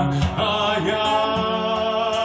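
A man singing a slow Russian romance, accompanied by his own acoustic guitar, with long held notes.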